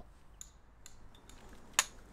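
Hammer striking a steel chisel to chop out old brickwork: a few faint, sharp metallic taps, with a louder strike near the end.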